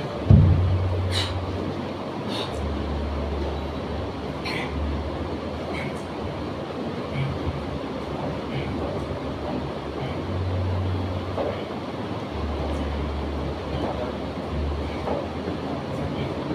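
Gym room noise: a steady rumble under a deep low hum that shifts between two low pitches every second or two, with a thump about a quarter second in and a few light clicks.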